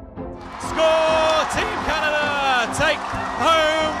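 Excited shouting over background music: a high voice in long held cries, the second falling in pitch, with a brief break before a third.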